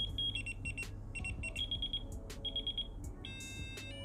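Digital alarm clock's electronic alarm tones being previewed one after another: short, high-pitched beeps in quick runs. The beep pattern changes pitch about a third of a second in, and switches to a different, steady several-note tone near the end as the next alarm sound is selected.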